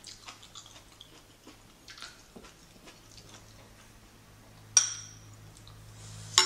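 Eating utensils moving food into a small ceramic bowl: a few faint taps and scrapes, then one sharp clink against the bowl near the end.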